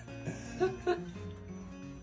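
Background music playing steadily, with a few short, soft voice sounds in the first second.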